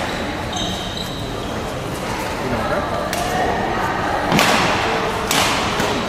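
Badminton rally in a reverberant gym: rackets strike the shuttlecock with sharp hits about three seconds in, then about a second and a half later, and again about a second after that. Shoes squeak on the hardwood court about half a second in.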